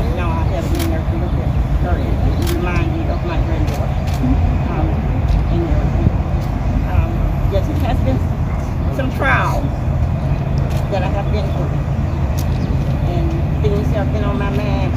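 Steady low outdoor rumble, with faint, indistinct voices scattered through it and one brief rising voice sound about nine seconds in.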